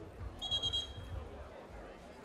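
A basketball referee's whistle blown once, a high shrill tone lasting under a second, about half a second in.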